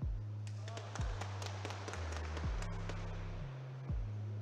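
A Russian billiards shot: a series of sharp clicks as the cue strikes and the balls knock into each other, starting about half a second in and dying away near three seconds, with a murmur of voices. Electronic background music with a steady kick-drum beat plays throughout.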